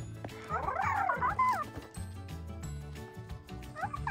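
Interactive plush toy pet playing its built-in electronic animal sounds: a quick run of high calls that slide up and down about half a second in, and another run right at the end, over background music.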